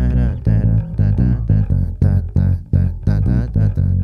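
Four-string electric bass played fingerstyle: a brisk, unbroken run of plucked notes, several a second, with deep sustained tones.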